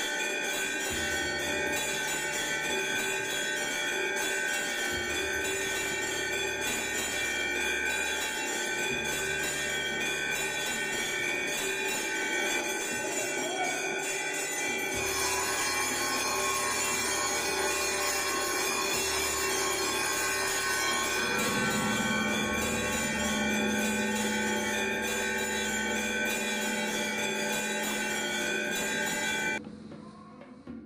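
Temple bells ringing continuously during an aarti, a dense wash of sustained metallic ringing over a low rumble. The ringing changes character about halfway through and cuts off abruptly just before the end.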